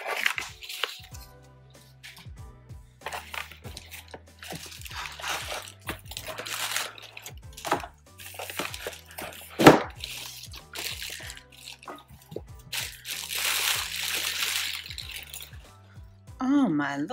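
Plastic wrap and paper packaging rustling and crinkling in irregular bursts as a nonstick frying pan is unwrapped in its cardboard box, with one sharp knock near the middle. Soft background music runs underneath.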